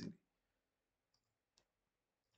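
Near silence with two faint computer mouse clicks about half a second apart, a little after a second in.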